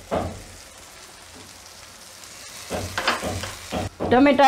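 Green beans and tomato sizzling gently in a wok, with a silicone spatula stirring and scraping through them a few times near the end.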